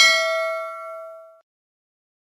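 A single bell 'ding' sound effect from a subscribe-button animation, the notification bell being clicked. It rings bright and metallic and fades out about a second and a half in.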